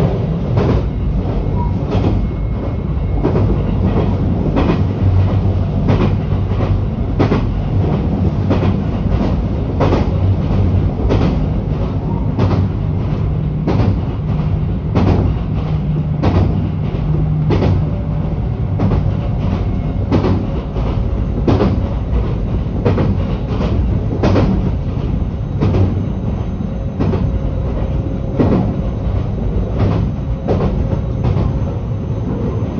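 Passenger train running at speed, heard from inside the carriage: a steady low rumble with the wheels clicking over rail joints about once or twice a second.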